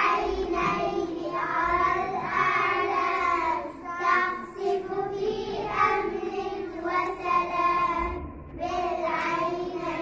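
A group of young children singing an Arabic nasheed about the five senses together in unison, in sung phrases with brief breaks about four seconds in and near the end.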